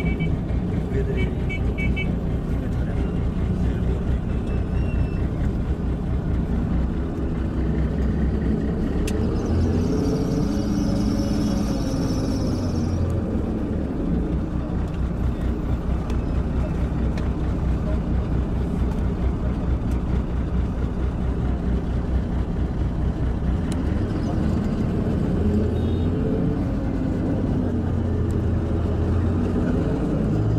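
Bus engine and road noise heard from inside the cabin: a steady low rumble whose pitch rises and falls twice as the engine works through its revs. A few seconds of hiss come about ten seconds in.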